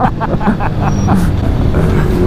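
Motorcycle engine running at steady revs while cruising, under wind noise on the rider's microphone.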